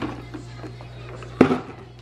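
Plastic water bottles and a plastic basket being handled, with light clicks and one sharp knock about one and a half seconds in, as a plastic bin is knocked or set down.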